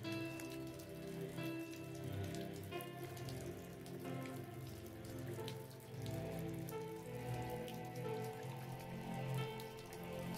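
Soft ambient music of slow, held notes layered over a steady recorded rain sound, used as a meditation backdrop.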